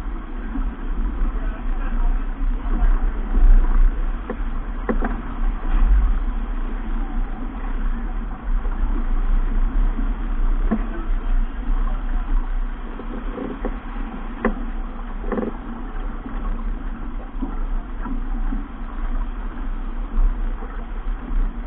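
Wind buffeting the camera's microphone and water rushing past the hull of a keelboat sailing heeled through chop, with a few scattered knocks.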